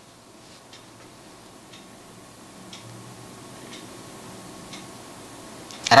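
A clock ticking faintly, about once a second, over quiet room tone.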